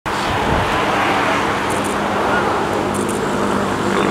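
Steady, even rushing outdoor noise with a low steady hum under it, and faint voices.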